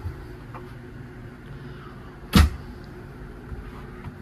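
A single loud thump, like a knock or bump against wooden interior panelling, about two and a half seconds in, over a steady low hum.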